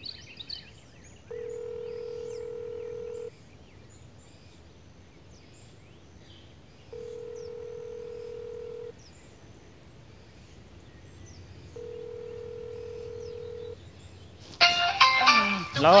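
Telephone ringback tone heard over a phone: three steady two-second rings with pauses between them, the call going unanswered. Near the end a voice comes in.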